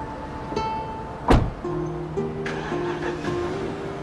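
Background drama music with slow, sustained notes. About a second in, one loud, sudden thump cuts through, a car door being shut.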